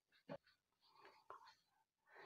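Near silence, with a few faint voice-like sounds: a brief one about a third of a second in and weaker traces around a second in.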